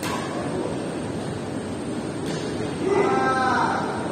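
Busy indoor badminton hall with a steady din of players and court noise; about three seconds in, one person lets out a loud, drawn-out cry.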